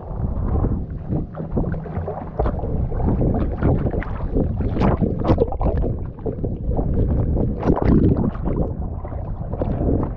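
Sea water splashing and sloshing around a camera held at the surface, with irregular sharp splashes and wind buffeting the microphone.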